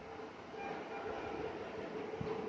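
Hand sliding over and smoothing shiny saree fabric on a table, a soft even rustle, over a faint steady hum.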